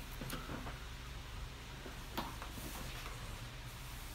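Quiet room with a steady low hum and a few faint clicks from a hand on a laptop, the sharpest about two seconds in.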